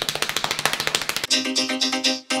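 Drum kit played in fast, even strokes, about fourteen a second, giving way about a second and a half in to a steady held tone.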